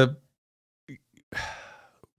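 A man's audible breath in a pause in speech: a short, sigh-like rush of air about a second and a half in, fading away, with a couple of faint mouth clicks just before it.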